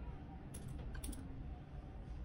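Quiet low background rumble with a few faint small clicks, about half a second and about a second in.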